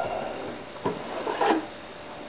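Plastic french fry cutter being handled after the cut: the pusher rubs and knocks lightly against the cutter's body in three short scrapes.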